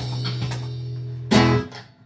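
Acoustic guitar chords ringing over a held low note, with one last strong strum about a second and a half in that rings out and dies away, closing the song.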